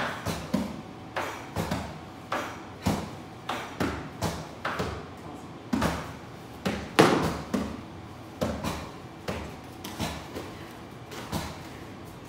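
Repeated punches landing on striking targets (a held pad, a makiwara board and a sandbag) during makiwara conditioning, with several people striking at once: short thuds and slaps about every half second to second. One strike about seven seconds in is the loudest.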